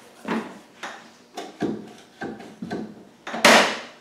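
Clutch pedal and linkage being worked by hand to coax the stalled fluid through the hydraulics: a run of about seven short mechanical clunks, roughly one every half second. The last one, near the end, is the loudest and longest.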